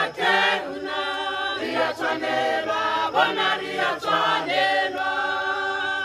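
A mixed choir of men and women singing unaccompanied in harmony, with the voices settling onto a held chord near the end.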